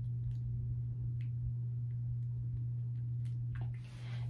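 A steady low hum with a few faint, scattered clicks, about one a second, as the front zipper and hook fastenings of a black shapewear bodysuit are handled.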